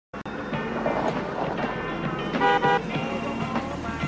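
A vehicle horn gives two short toots in quick succession about two and a half seconds in, over a steady background.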